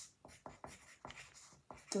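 Pencil writing on paper: a quick run of short, faint scratching strokes, several a second.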